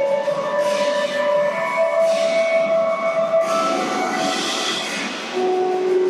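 Music for the skating routine playing, with long held notes.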